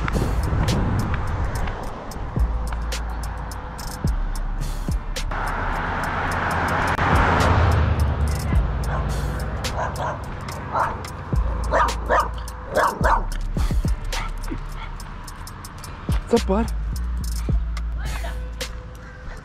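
Background music with a steady bass line, while a dog barks and yips several times in the second half.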